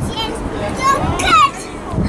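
Children's high-pitched voices calling out, one call sweeping down in pitch about a second in, over a low wind rumble on the microphone.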